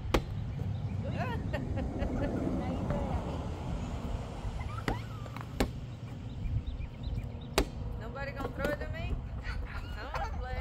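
A large rubber ball slapping on asphalt: a sharp bounce just after the start, two more around the middle and one near eight seconds, over a steady wind rumble on the microphone, with brief voices in between.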